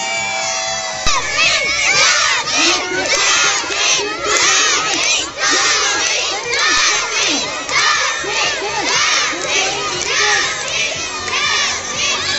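A crowd of schoolchildren shouting and cheering on a running race. The cheering breaks out suddenly about a second in and stays loud and dense.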